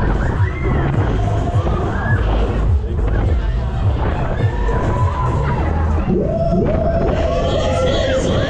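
Loud fairground ride music with a heavy bass beat, with people screaming and cheering over it on board the spinning ride; from about six seconds in, one voice holds a long high scream.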